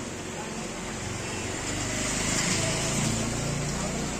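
A motor vehicle passing close by, its engine hum and road noise building through the middle and easing near the end, over the murmur of voices on the street.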